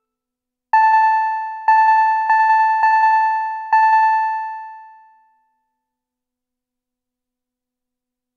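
A bell-like pitched tone played through a Max/MSP delay patch, struck five times in quick succession about a second in. Each strike has a fast rippling flutter of short repeats. The last one rings out and fades away about five seconds in.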